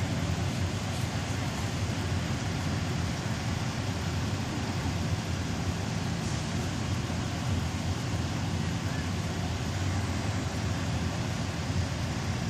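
A parked fire engine's diesel engine idling steadily, a low constant hum with no change in speed.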